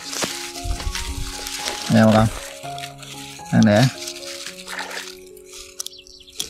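Dry grass and stems rustling and crackling as a hand parts them, heaviest in the first two seconds, over background music with long held notes.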